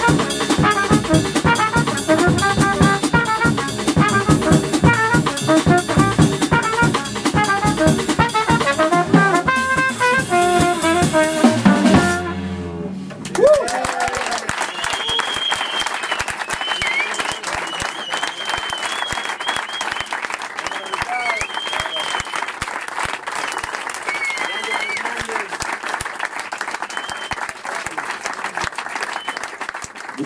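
A jazz trio of trumpet, double bass and drum kit plays the final bars of a tune, all stopping together about twelve seconds in. After a brief lull, an audience applauds steadily for the rest.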